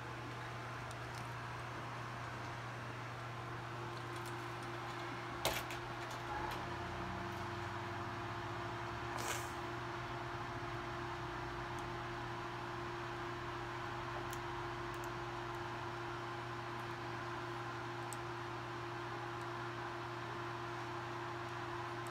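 A few small plastic clicks of Lego pieces being handled and pressed together, the clearest about five and a half seconds in and another about nine seconds in, over a steady low machine hum.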